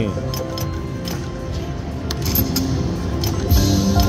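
Video slot machine's electronic game music and spin sound effects, with repeated sharp chiming clicks as the multiplier reels spin and stop.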